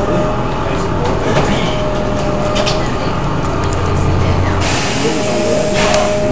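Engine and road noise inside a moving city bus: a steady drone with a whine that comes and goes, and a sudden hiss lasting about a second near the end.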